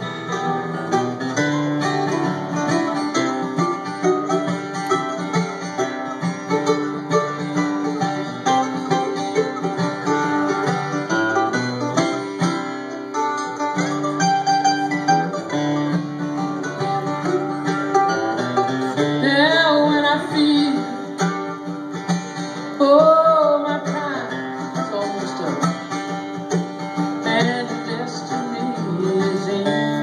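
Mandolin and acoustic guitar playing together live in an instrumental passage of a country-rock song, with plucked notes running over strummed chords.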